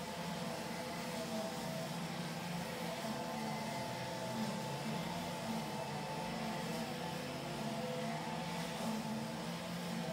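Several petrol string trimmers running at steady high speed together, their engine notes wavering slightly against one another.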